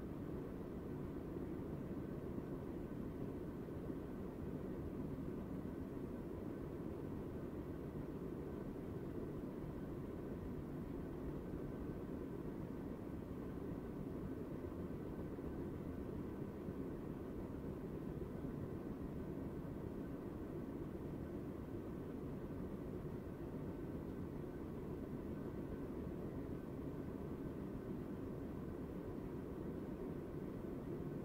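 Steady, even white noise, weighted toward the low end, with a faint thin steady tone above it and no knocks or clatter.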